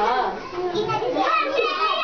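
Children's voices chattering, high-pitched young voices talking.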